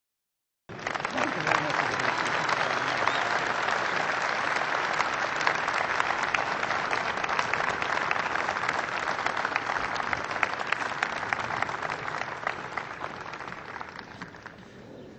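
A large crowd applauding. The applause starts suddenly under a second in, holds steady, and dies down near the end.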